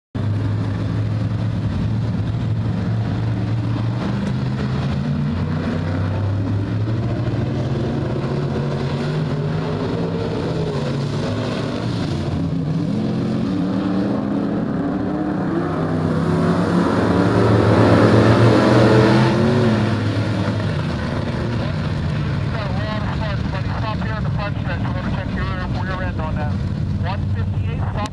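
Street stock race cars' engines running in a pack around a dirt oval. The sound grows louder a little past halfway, then eases back.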